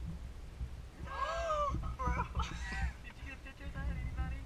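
Wordless human vocal sounds: a drawn-out, high, rising-and-falling exclamation about a second in, then shorter voice sounds, over a steady low rumble in the car cabin.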